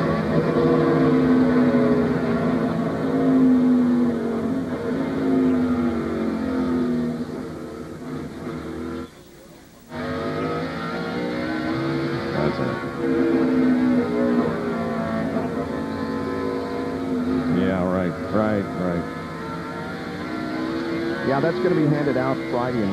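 Onboard sound of a NASCAR Winston Cup stock car's V8 at racing speed on a road course, its pitch rising and falling as the driver accelerates, lifts and shifts through the corners. The sound dips sharply for about a second around nine seconds in.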